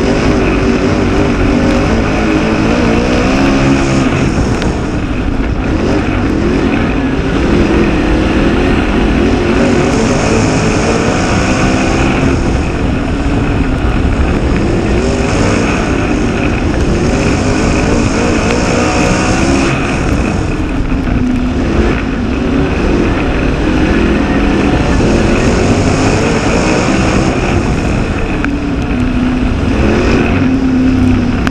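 Dirt Super Late Model race car's V8 engine running hard at racing speed, heard from inside the cockpit, its revs climbing and dropping again in repeated waves, lap after lap.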